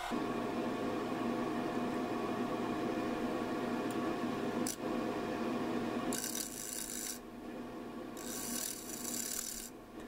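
Wood lathe (Laguna 1836) running steadily with a faint hum while a bowl gouge cuts the inside of a spinning dry mesquite bowl. Two spells of hissing cutting come in the second half, with a single click midway.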